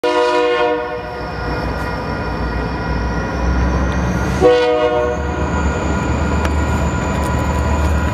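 Diesel freight locomotive horn: the tail of one blast in the first second, then a short blast about four and a half seconds in, over a steady low engine rumble that grows as the train nears the crossing.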